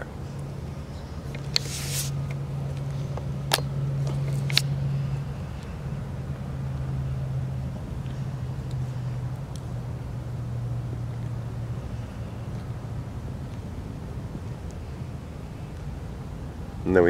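Low, steady hum that could be road noise from distant traffic, fading away after about twelve seconds. A short hiss comes about two seconds in, and two sharp clicks follow a second or so apart.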